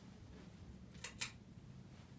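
Two quick, sharp clicks about a second in, a fifth of a second apart: the pull-chain switch on a 1988 Codep hugger ceiling fan's light kit being pulled to switch the lights on. A faint low hum runs underneath.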